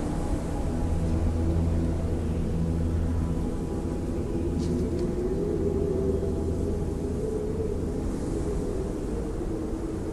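Steady low hum of a car driving, with a tone that rises slightly about five seconds in.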